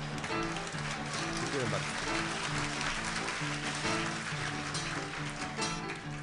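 Acoustic guitar playing a simple chord accompaniment, an instrumental passage between sung verses of a live cabaret song.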